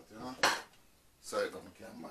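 Kitchenware being handled off-camera beside the stove: a sharp clink about half a second in, then a second, softer knock about a second later.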